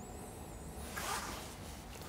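Quiet room tone with a faint, brief swish of hand handling about a second in.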